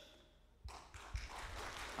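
A pause in the speech filled with faint room noise and a couple of soft low thuds, about half a second and a second in.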